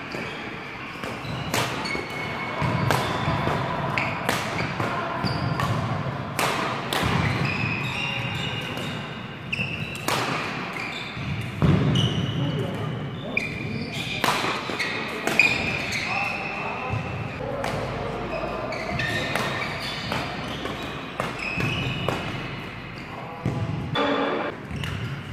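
Badminton rackets striking a shuttlecock in a fast doubles rally: sharp smacks about once a second, echoing in a large sports hall.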